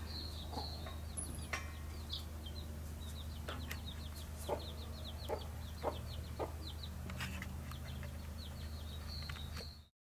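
Birds calling outdoors: a quick run of short high chirps with scattered sharper calls, over a steady low hum. It all fades out at the very end.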